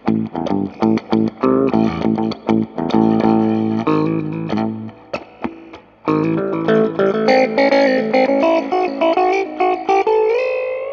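Electric guitar played through a Blackout Effectors Sibling analog OTA phaser pedal: picked notes and chords with the phaser effect. It dies down briefly about five seconds in, then comes back with a run of higher notes.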